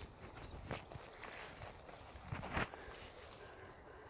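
Footsteps on dry grass and twigs: a few scattered, irregular crunching steps.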